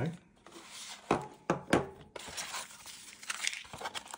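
Packaging and handling noise: a few sharp plastic knocks, then crinkling and rustling as the gimbal and its box tray are handled.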